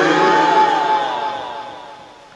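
A man's drawn-out chanted cry through a public-address system. Its pitch rises and then falls, and it fades away steadily.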